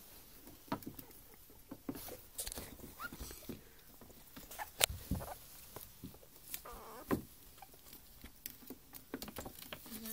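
Two ferrets play-fighting on a wooden floor: paws scrabbling and skittering, with scattered irregular knocks and taps, the sharpest about halfway through.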